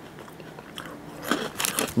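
Crunching of a crisp coated peanut-ball snack being chewed. It is quiet for the first second, then comes a quick cluster of crisp crunches near the end.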